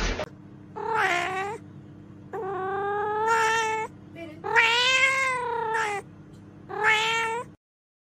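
Four long, drawn-out meows of a cat-calling sound. The second and third meows are the longest, and the sound cuts off suddenly near the end over a faint steady hum.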